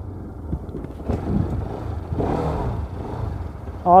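A Bajaj Pulsar RS200's single-cylinder engine running at low speed as the bike is ridden slowly, its pitch rising and falling a little, with a brief rush of noise near the middle.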